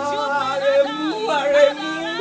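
A woman wailing in grief, crying out a name in long, wavering, sliding cries over a low sustained musical score.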